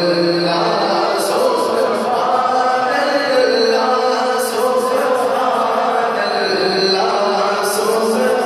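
Man reciting a naat, devotional praise poetry for the Prophet, sung solo into a microphone in long, drawn-out melodic lines.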